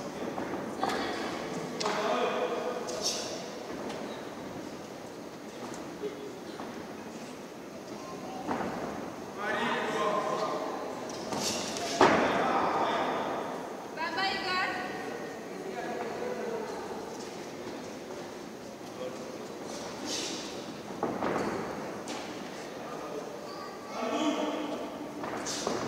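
Voices shouting in a large echoing hall, with scattered thuds from the boxers in the ring; the loudest is a sharp thud about twelve seconds in.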